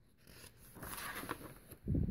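A picture book's paper page being turned: rustling and sliding for about a second, then a low thump near the end as the page is laid flat.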